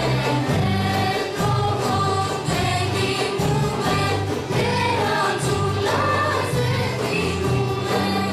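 Live Greek folk ensemble playing a Thracian song: several voices singing together in unison over plucked tambouras and frame drums keeping a steady rhythm.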